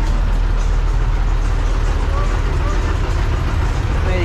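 A city bus engine running close by: a steady low rumble with street noise, and faint voices in the background.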